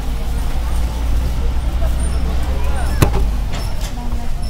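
Open-sided tour bus running with a steady low engine rumble as it drives along, heard from a passenger seat. A single sharp knock comes about three seconds in.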